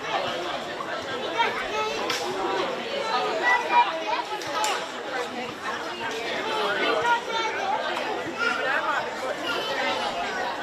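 Several people's voices talking and calling out over one another with no clear words, with a couple of brief sharp knocks about two and four and a half seconds in.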